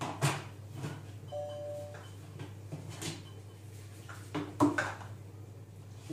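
The plastic lid of a Monsieur Cuisine Connect food processor's stainless steel mixing bowl being unlocked and lifted off, with a series of clicks and knocks, the loudest about four and a half seconds in. A short steady tone sounds about a second and a half in.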